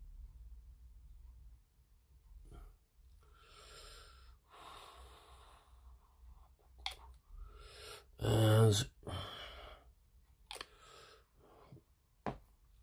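A man breathing out heavily twice and then giving a short voiced mumble about eight seconds in, the loudest sound here. A few small clicks come from handling a brush-cap glue bottle.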